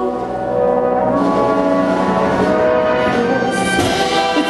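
A symphonic concert band playing a sustained instrumental passage carried by the brass and woodwinds, with a fuller, brighter entry near the end.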